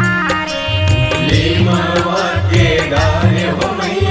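Chhattisgarhi devotional jas geet: a woman singing over a keyboard organ melody, with a steady beat from tabla and an electronic drum pad. The keyboard plays alone for about the first second, then the voice comes in.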